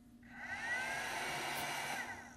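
Midnite Solar Classic 150 charge controller's cooling fan running as the unit powers up and boots: a steady whir that builds up about half a second in and dies away near the end.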